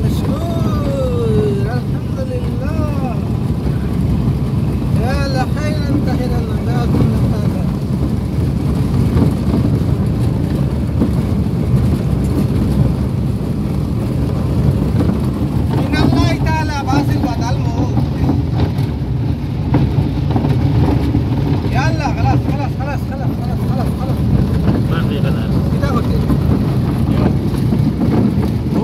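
Steady low rumble of a moving vehicle's engine and road noise, heard from inside the vehicle, with brief snatches of voices several times.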